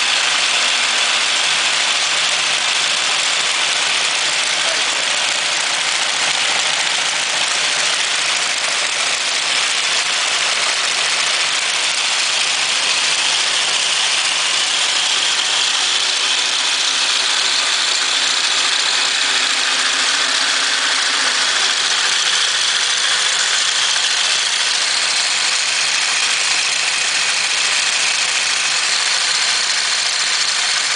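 Motor-driven multi-cam rocker-arm machine running fast on its speed control, a steady whirring clatter of many cams and linkages turning at once.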